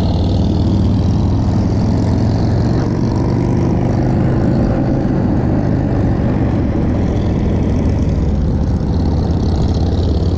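A steady, loud low rumble without a break, the noise of vehicles on the move.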